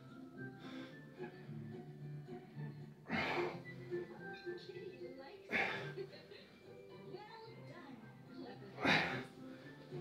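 A man's sharp, forceful breaths three times, about every two to three seconds, as he strains through push-ups. Under them, a children's TV show plays with music.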